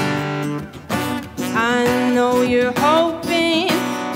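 Live acoustic guitar strummed, with a woman singing over it. The voice drops out briefly about a second in and comes back with a held, gliding line.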